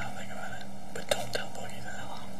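Hushed, whispered voices too faint to make out, over a steady electrical hum, with two sharp clicks a little over a second in, a quarter second apart.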